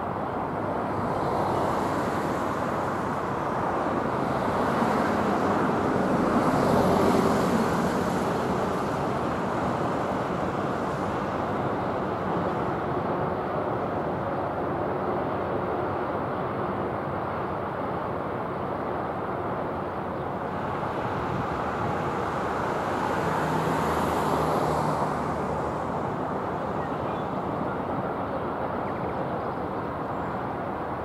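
Steady city road-traffic noise, swelling as vehicles pass about 7 seconds and 24 seconds in.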